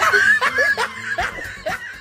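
A person laughing in a string of short snickers, about three a second, that fade away.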